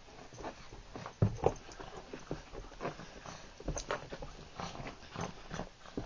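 A small dog wriggling and rolling on a carpet, its body and paws rubbing and scrabbling against the pile in short, irregular scuffs and rustles. Two louder knocks come about a second in.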